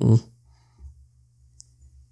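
A man's voice ends a phrase, then low steady hum with a single short, faint, high click about a second and a half in.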